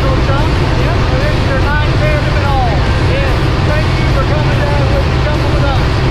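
Small jump plane's piston engine and propeller running steadily, a loud, unbroken drone heard from inside the cabin. Voices talk over it.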